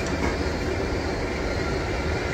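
Steady jet airliner cabin noise: an even low hum with hiss above it.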